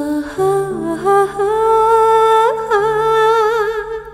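Soundtrack music: a voice humming a slow, wordless melody in long held notes, wavering with vibrato near the end, over steady low accompanying notes.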